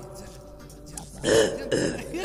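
Rock band recording between sung lines: about a second of quieter steady held notes, then two short loud vocal outbursts, about a second in and near the end.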